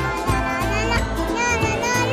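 Background music with held bass notes, and a child's high voice over it.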